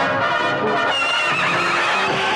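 A horse neighing over background film music. The neigh comes about a second in and wavers downward.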